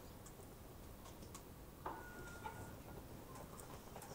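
Quiet room tone with a few faint scattered clicks and ticks, the sharpest a little under two seconds in.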